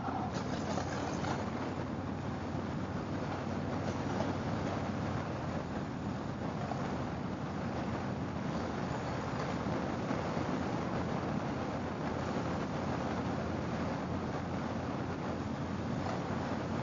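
2004 Harley-Davidson Fat Boy's V-twin engine running steadily at highway cruising speed, mixed with steady wind and road noise.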